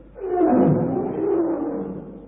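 A lion roaring: one long roar that starts about a quarter second in and fades away near the end.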